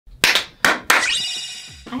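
About four sharp hand claps in quick succession in the first second. They are followed by a ringing tone that rises in pitch and fades away within the next second.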